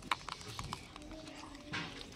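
Gray langurs crunching dry grains, with a few sharp cracks in the first second as the grains are bitten. A brief rustle comes near the end.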